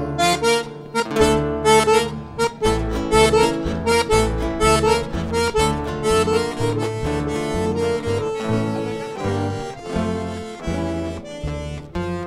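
Button accordion playing a quick chamamé melody line in an instrumental passage between verses, accompanied by acoustic guitar and plucked double bass notes.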